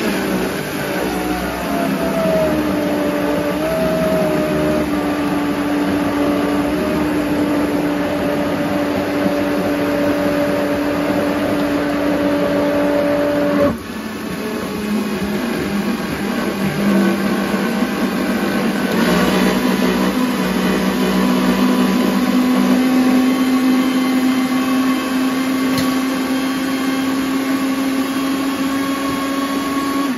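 Red high-speed countertop blender running on frozen berries and bananas, a steady motor whine whose pitch shifts as the thick frozen mix turns to a smooth purée. The tone breaks and dips briefly about 14 seconds in, then runs steady again until it is switched off at the very end.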